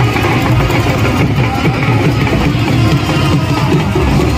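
Loud music with plucked-string instruments and a beat, playing throughout.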